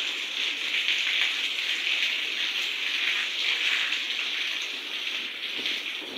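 Heavy rain falling steadily, an even hiss of drops splashing on wet paving.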